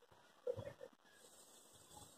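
Near silence: room tone, with a few faint, short low sounds about half a second in.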